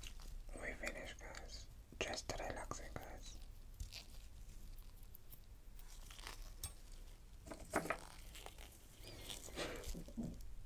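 Eggshell being chipped and picked away with a metal spatula: scattered small cracks and clicks. A quiet voice is heard near the start and again near the end.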